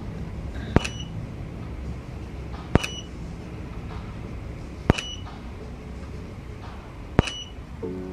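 Camera shutter firing four times, about two seconds apart, each shot a sharp click with a short high beep, over a low steady hum.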